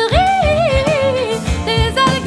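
A woman singing a sustained, wavering phrase that slides down in pitch over about a second and a half, over orchestral pop backing with drums.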